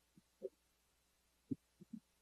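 Near silence: room tone, with a few faint short taps about half a second in and again near the end.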